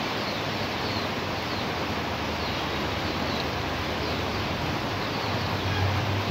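Steady hiss of rain falling outside an open window, even and unbroken, with faint short high chirps recurring through it.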